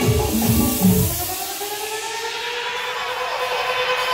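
Dance-mix music whose bass beat cuts out about a second in, leaving a slow rising sweep, a transition between songs in the medley.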